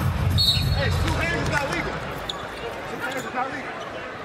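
Basketball arena game sound: crowd rumble that thins after about a second, with a short, steady, high referee's whistle about half a second in as play stops, and scattered voices.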